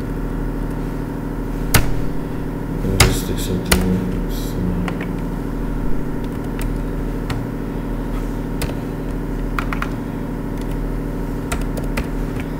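Computer keys clicking a few times as figures are typed, over a steady low hum made of several fixed tones.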